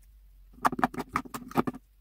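Purple glitter slime squeezed and stretched in the hands, giving a quick run of about a dozen wet clicking pops for just over a second.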